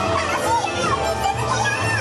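Parade music playing from the float's loudspeakers, with children's voices chattering over it.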